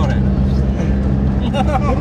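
Vehicle engine running steadily at driving speed, a constant low drone with road and tyre noise, heard from inside the cabin. A voice starts near the end.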